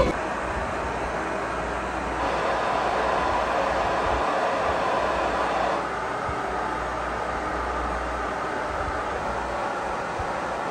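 Marantz SR7013 AV receiver's test tone: steady pink noise played through the home-theater speakers one channel at a time for a speaker level check. It steps up in level about two seconds in and down again near six seconds as the tone moves from one speaker to the next.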